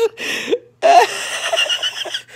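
Close, loud laughter in short breathy bursts, starting again about a second in after a brief pause.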